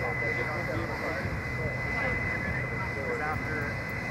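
Fire truck engine running steadily, with a steady high whine over it and faint voices in the background.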